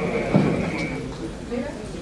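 Faint background voices and room noise, with a single thud about a third of a second in.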